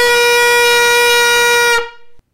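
Trumpet played open, without a practice mute, as loud as the player can: one long, very loud held note that stops shortly before the end.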